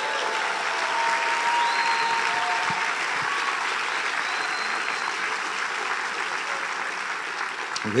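Large congregation applauding steadily in a big hall.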